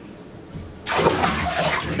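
Bathtub tap turned on about a second in, water pouring steadily into the tub.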